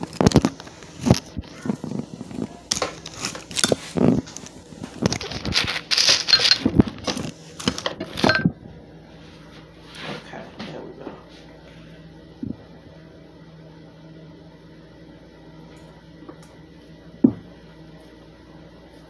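Kitchen clatter: a run of knocks and rattles for about eight seconds, then a steady low hum with one sharp knock near the end.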